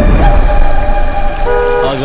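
Car horn honking as a vehicle pulls up, a low engine rumble under the first part, with a short second toot near the end.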